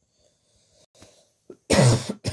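A person coughing once, loudly and harshly, near the end, preceded by a faint breath and a small catch in the throat. It is part of a coughing fit.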